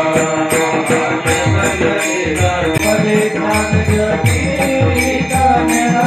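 Hindu devotional chanting, a bhajan-style aarti, with a steady beat of small hand cymbals at about three strokes a second and a drum playing falling bass strokes under the singing.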